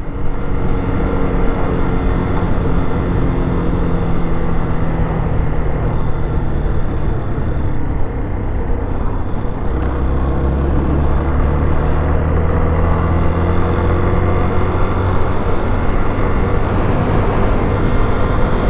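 Yamaha Fazer 250's single-cylinder four-stroke engine running steadily under way as the motorcycle is ridden along a road, with a brief dip in the engine note about eight seconds in.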